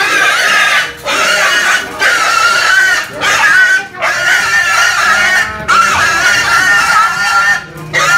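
A pig squealing loudly in long, high, strained squeals, one after another with only short breaks for breath, as men hold it down.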